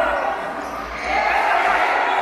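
Futsal ball kicked and bouncing on the court floor, echoing in the gym hall. Spectators' voices swell from about a second in.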